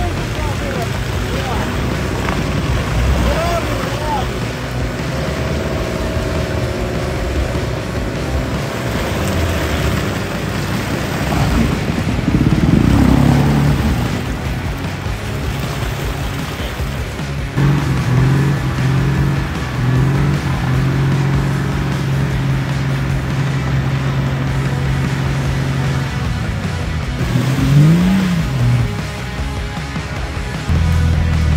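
Jeep Cherokee XJ's engine revving hard while it is stuck in deep swamp mud, a wheel spinning and churning mud as the vehicle is pulled out on a cable. The revs swing up and down sharply about halfway through and again near the end, with a spell of steady high revs in between.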